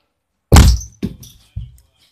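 Heavy thuds at a door: one loud thump about half a second in, followed by two softer thuds about half a second apart.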